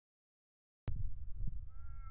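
Silence for nearly a second, then wind buffeting the microphone with an uneven low rumble. A faint, drawn-out pitched whine comes in near the end.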